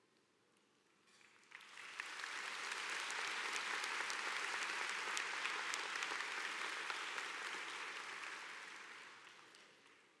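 Large audience applauding. The clapping starts about a second and a half in, holds steady, then dies away near the end.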